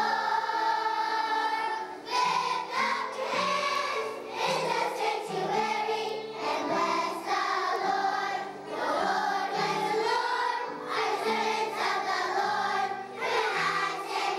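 A choir of kindergarten children singing a song together in unison.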